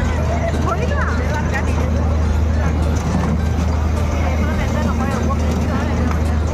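Fairground din: many overlapping voices and children's calls over a loud, steady low machine hum, with music mixed in.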